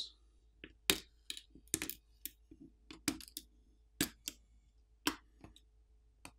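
Small, irregular clicks and taps of a plastic pry tool on a Samsung Galaxy S21 FE's main board, as flex-cable connectors are popped off their sockets.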